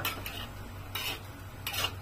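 A spatula scraping and tossing fried rice vermicelli around a wok, in four short scraping strokes; the last and longest comes near the end.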